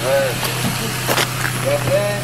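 Steady low engine hum with faint, indistinct men's voices over it and two brief sharp clicks.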